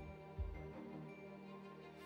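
Soft instrumental background music with sustained, held notes and a deep low note about half a second in.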